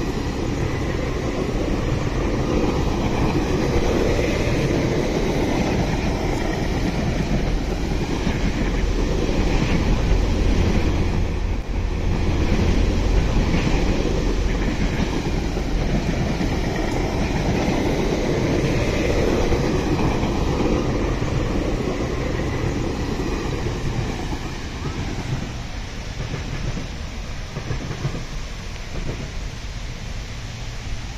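GO Transit bilevel passenger coaches rolling past at close range: a continuous rumble and clatter of wheels on the rails that swells to its loudest near the middle and eases off toward the end.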